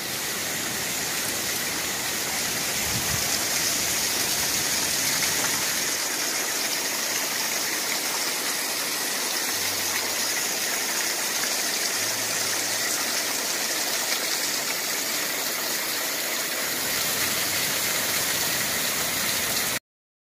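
Waterfall running over rocks, a steady hiss of falling water that cuts off suddenly near the end.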